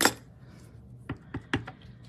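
Light clicks and taps of paper squares and clear acrylic stamp blocks being handled on a craft work surface: one sharper click at the start, then a few soft taps about a second in.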